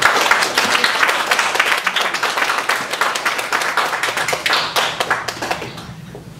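A roomful of people clapping, starting suddenly and dying away near the end.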